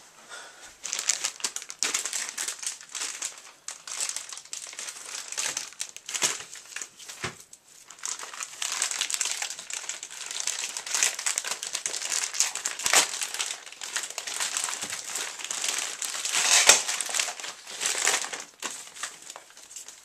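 Crinkling and rustling of a mailing envelope being handled and opened by hand to get a VHS tape out. It starts about a second in and goes on in a busy, uneven stream of small crackles with a few short pauses.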